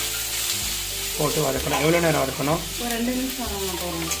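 Onions, tomatoes and grated coconut sizzling in oil in a kadai while being stirred with a wooden spatula, a steady hiss, with a person talking over it from about a second in.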